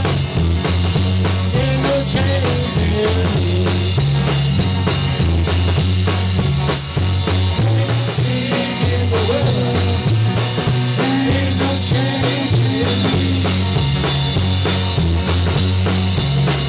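Amateur rock band playing live: electric guitars over a drum kit with cymbals keeping a steady beat, and a low bass line moving in steps underneath.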